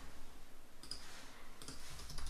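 A few faint clicks at a computer, about a second in and again near the end.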